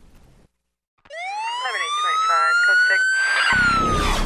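After a brief dead gap, a police siren winds up in one rising wail, levels off and dips slightly, with voices underneath. A loud rushing noise with a deep rumble cuts in near the end.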